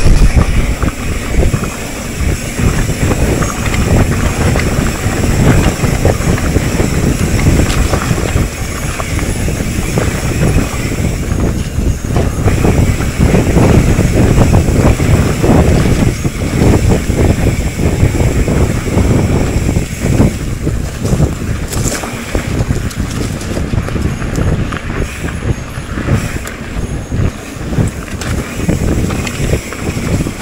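Wind buffeting the microphone over the constant rattle and rumble of a mountain bike rolling fast down a rough dirt trail.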